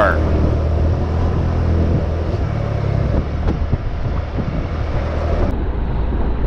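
Motorcycle engine running steadily while riding in traffic, with wind and road noise on the bike-mounted microphone.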